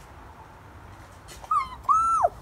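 A child imitating a rooster's crow in a high squeaky voice about one and a half seconds in: a short note, then a longer held note that falls away at the end.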